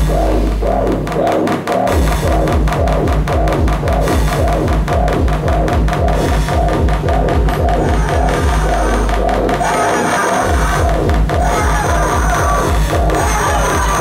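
Live electronic dance music played on synthesizers and drum machines: a fast, even beat under a repeating synth pattern. Twice a long low bass note is held and then cuts out for a moment, about a second in and again around ten seconds in.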